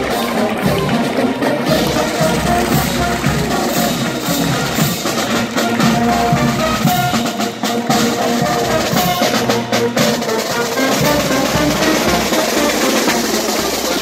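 Marching band playing as it passes: bass drum and snare drums beating, with brass instruments holding notes.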